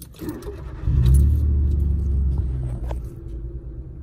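Citroen C1 started with the key: keys jingle at the ignition, then about a second in the engine fires with a loud rumble and settles to a steady idle.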